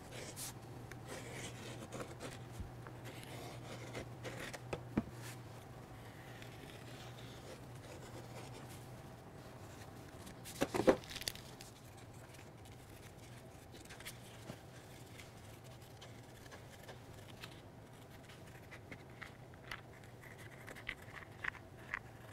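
Scissors cutting a vinyl decal sheet on its paper backing, with faint snips and paper rustling over a steady low hum. A brief, louder pitched sound comes about halfway through.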